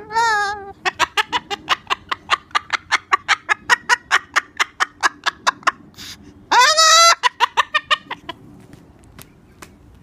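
Moluccan cockatoo calling: a rapid string of short, clipped calls, about five a second, broken by one loud drawn-out call about two-thirds of the way through, then a few more short calls.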